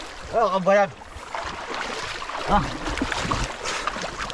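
Shallow stream water running and swirling around wading legs, with a loud short two-part call from a man's voice about half a second in and a briefer vocal sound a little past midway.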